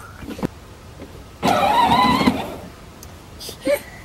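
Children's battery-powered John Deere Gator ride-on toy driving off across the grass, its electric motor and gears whining, loudest for about a second partway through.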